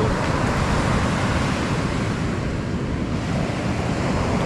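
Ocean surf washing onto a sandy beach, a steady rushing, with wind rumbling on the microphone.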